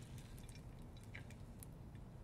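Faint, scattered pops and crackles of hot bacon drippings in a skillet over a low steady hum.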